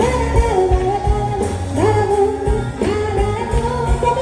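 Live music with a singer holding and gliding between long notes over an accompanying band and a steady drum beat.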